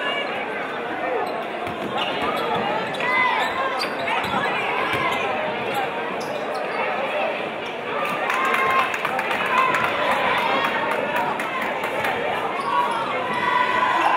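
Basketball dribbling and bouncing on a hardwood gym floor during play, with steady crowd chatter echoing through the large gym.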